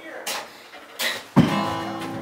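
Guitar strummed: one chord about one and a half seconds in, left to ring out.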